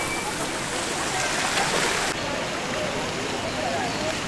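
Steady rushing of a fountain's falling water, with people chattering in the background.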